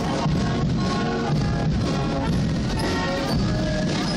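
A Spielmannszug marching band playing a tune on brass, including tubas, over drums, at a steady full level.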